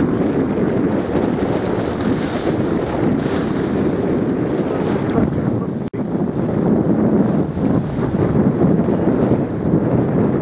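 Wind buffeting the microphone aboard a small boat crossing choppy water: a steady, gusting rumble with the wash of the waves under it. The sound cuts out for an instant about six seconds in.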